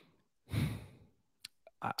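A man sighs into a close microphone: one short breathy exhale about half a second in, followed by a couple of faint mouth clicks as he starts to speak.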